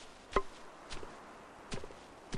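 A bundle of sennegras (shoe sedge) being beaten against a stone to soften it: three sharp knocks, the first the loudest.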